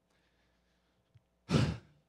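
A man's short, loud sigh close into a handheld microphone about one and a half seconds in, after a near-silent pause.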